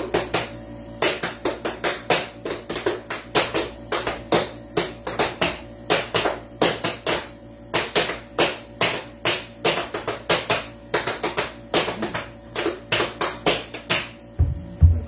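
Quick, uneven rhythm of sharp taps and slaps, several a second, beaten out in the manner of tap-dance steps; it begins about a second in.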